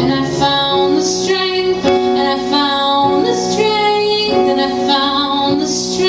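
A woman singing live while accompanying herself on an electric keyboard with a piano sound, in long held notes.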